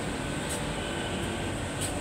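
Water-fill pump of a direct-cooling block ice machine running steadily, pumping water from the tank into the ice molds just after being switched on.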